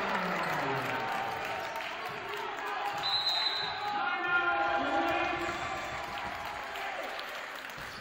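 Basketball game in a gym: voices on and around the court with a ball bouncing, and a short, high referee's whistle about three seconds in that stops play.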